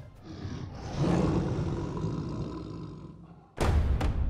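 A lion roaring: one long roar that swells about a second in and then fades away. Near the end, drums and percussion music come in.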